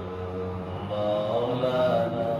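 A man's voice chanting an Islamic devotional recitation in long, drawn-out held notes, sung into a handheld microphone. It runs as two sustained phrases, the second starting about a second in.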